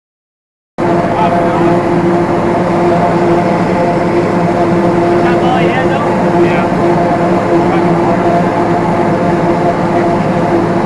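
Tractor-drawn forage harvester chopping standing corn: a loud, steady mechanical drone of the tractor engine and the PTO-driven harvester, starting abruptly a little under a second in.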